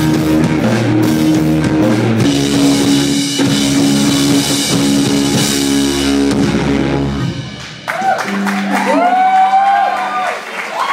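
Rock band playing live on distorted electric guitars, bass and drum kit, sustaining chords under a wash of cymbals. About eight seconds in the band stops, leaving a held low note and high whining tones that bend up and down, like guitar feedback ringing out at the end of the song.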